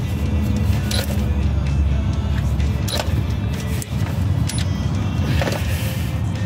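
Ridgid cordless electric ratchet running on a 14 mm oil drain plug, its motor whirring with a few sharp clicks, over background music. The ratchet lacks the torque to break the plug loose.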